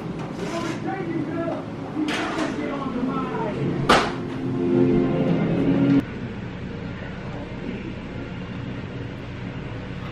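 A man's voice talking indistinctly, with one sharp click about four seconds in; at about six seconds the voice stops abruptly, leaving a steady low hum.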